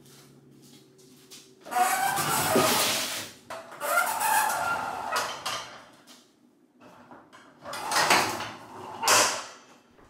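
Steel sectional garage door pulled down by hand, its rollers rumbling and scraping along the tracks in several separate pushes, the last two near the end as it shuts. The door runs too tight in its tracks because of newly fitted roller spacers.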